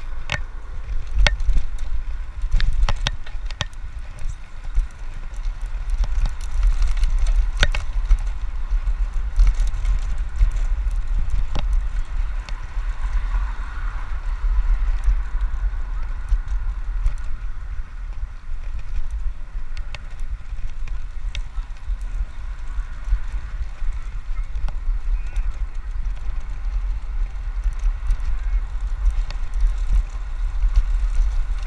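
Wind buffeting the microphone of a camera on a moving road bike, a loud, steady low rumble with tyre noise from the path. Occasional sharp clicks and knocks from the bike going over bumps, most of them in the first several seconds.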